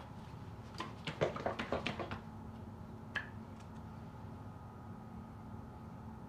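A plastic ketchup bottle being handled: a quick run of short clicks and taps, then a single click about a second later, followed by quiet room tone.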